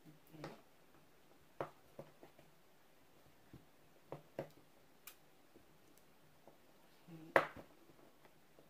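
Kitchen knife cutting a block of cheese into cubes on a cutting board: scattered light taps and clicks of the blade meeting the board, the loudest knock about seven seconds in.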